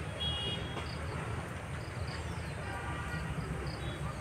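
Outdoor background noise: a steady low rumble under faint, evenly repeated high insect chirps, with a brief high-pitched tone near the start.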